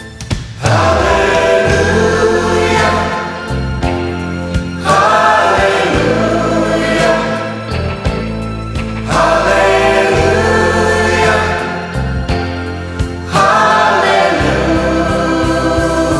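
Music: a choir singing with instrumental accompaniment, in long phrases that begin about every four seconds over a sustained bass.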